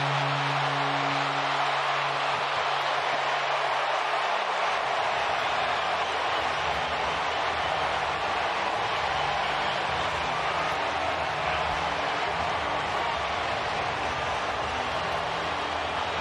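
Ballpark crowd cheering a walk-off win: a continuous wall of cheering and shouting at a steady level. For the first four seconds or so a steady low tone sounds under it, then stops.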